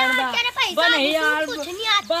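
Speech only: boys' voices talking back and forth.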